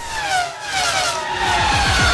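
Race car engine sound effect in an animated logo sting: a high engine note falls in pitch as if passing by, and rising revs come in underneath about halfway through.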